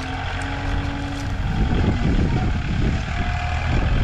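Engine of a sugarcane grab loader running steadily as it works its arm, with a couple of short faint whines.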